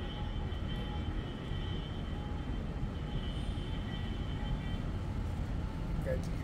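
Steady low rumble of distant engine noise, with faint thin high tones running above it.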